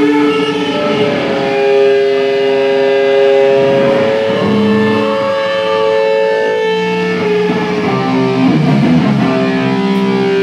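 Amplified electric guitar ringing out long, sustained distorted notes in a live hardcore set, the held pitches changing every second or two, with no steady drumbeat under them.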